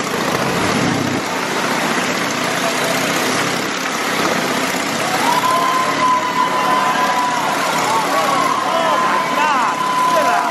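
Motorcycle engine running hard as it circles the wall of a wooden wall-of-death drum, its sound filling the enclosed drum. From about five seconds in, a steady high whistle-like tone runs alongside, and near the end the pitch swoops up and down repeatedly.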